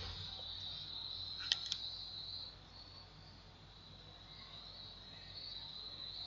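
Faint, steady high-pitched background hiss, with two quick clicks about a second and a half in.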